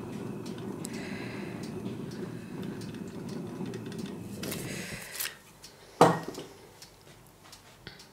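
Handheld gas torch burning over wet acrylic paint, a steady low rush that stops about five seconds in. A single sharp knock follows about a second later.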